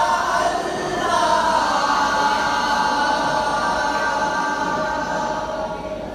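Arabana muttu song: a group of male voices singing together in a chant-like melody, holding long drawn-out notes from about a second in until they fade near the end, with no drum beats.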